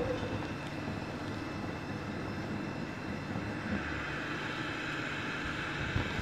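Gas stove burner flame running with a steady rushing hiss under a pot of milk that has just been put on to heat.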